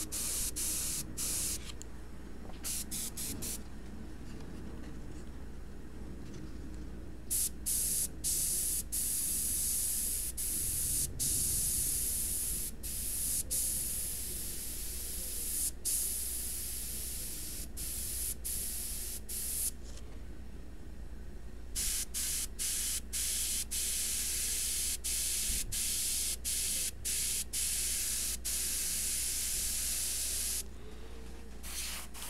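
Airbrush hissing as it sprays paint in a string of short strokes: the air cuts off for an instant dozens of times as the trigger is let go. The hiss drops away for a few seconds early on and again about two-thirds of the way through.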